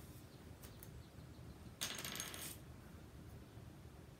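A brief rattling clatter about two seconds in, lasting about half a second, as small hard paint bottles are handled.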